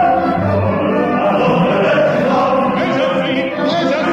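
Operatic singing by a chorus with orchestral accompaniment, several voices sounding together at a steady loudness. It comes from a live concert recording.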